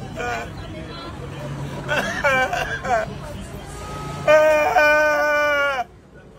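A man crying and wailing aloud: short sobbing cries in the first half, then one long held wail from about four seconds in that sags in pitch and breaks off just before the end.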